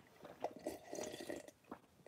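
Faint sips and swallows of coffee from a mug, a few soft, short mouth and liquid sounds.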